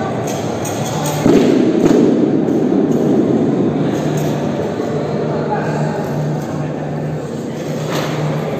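Sports-hall background of voices and music, with a heavy thump about a second in followed by a couple of seconds of louder low noise.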